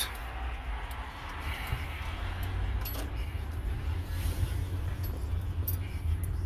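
Car running and rolling slowly, heard from inside the cabin: a steady low rumble with a few light clicks and rattles.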